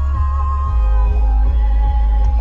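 Music playing loudly through a car stereo inside the cabin, with a heavy, deep bass line under held melodic tones.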